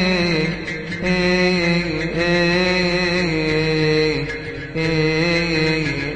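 Coptic Orthodox liturgical chant sung by male voices without instruments, long held notes that waver in slow melismatic ornaments, dipping briefly twice.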